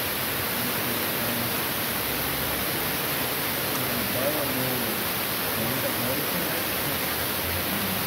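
A steady, even hiss with faint, indistinct voices underneath.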